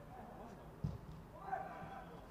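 Faint field ambience of a football match: distant players' shouts, with one short dull thump a little under a second in.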